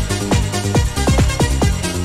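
Electronic dance music played from vinyl records in a DJ mix, with a steady four-on-the-floor kick drum at about two beats a second under synth chords.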